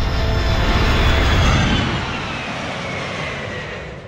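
Whoosh sound effect that swells to a peak about a second in and then fades, with a falling pitch, over sustained background music.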